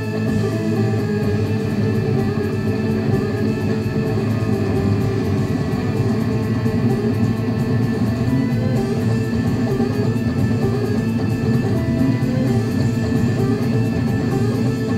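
Rock band playing live: electric guitars to the fore over bass and drums, loud and continuous.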